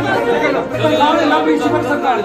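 Several people talking over each other at once.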